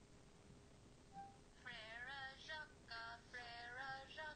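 Microsoft's Cortana voice assistant singing a short song in a synthetic female voice, played through a phone's small speaker into the microphone. The singing starts about one and a half seconds in.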